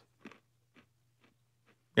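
A person chewing crunchy snacks close to a microphone: faint crunches about every half second over a low steady hum.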